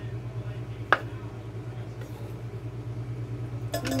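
Kitchen knife cutting a boiled red potato into wedges on a wooden cutting board, knocking once sharply on the board about a second in, over a steady low hum. A brief clatter follows near the end.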